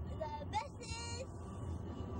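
A girl's high-pitched voice in the first half, over the steady low rumble of a car's cabin on the road.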